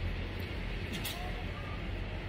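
Steady low room hum, with a few faint clicks as leather handbags and their metal hardware are shifted in the hands.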